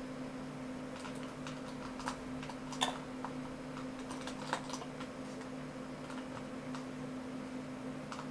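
Scattered light clicks of computer keys as moves are stepped through in chess software, over a steady low electrical hum.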